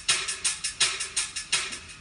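Korg Pa1000 arranger keyboard playing a user-loaded "Hula Sticks" percussion soundfont sample with added delay: a quick, even run of bright, clacking stick strikes, about five to six a second, that thins out near the end.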